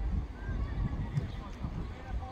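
Uneven wind rumble on the microphone with faint shouts from players on the pitch.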